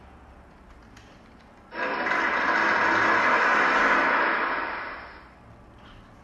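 A dense, noisy sound effect from the arithmetic training software's computer speakers, starting suddenly about two seconds in, loud for about two seconds, then fading out by about five seconds, as the program moves from the answer prompt to the result screen.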